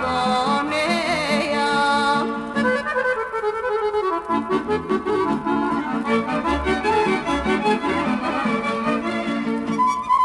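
Bulgarian folk song: a wavering sung note ends about two seconds in, and an instrumental passage with quick runs of notes follows.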